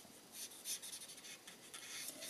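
Brush tip of an alcohol blending marker stroking over cardstock as a small area is coloured in: a run of short, faint rubbing strokes.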